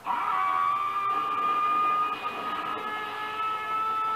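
A man's long, high scream from a kung fu film soundtrack, held on one slightly rising pitch. It is played through a TV's speaker.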